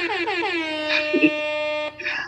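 A man's voice holding one long sung note at the end of a live a cappella dancehall freestyle, gliding down in pitch and then held steady before cutting off just before the end.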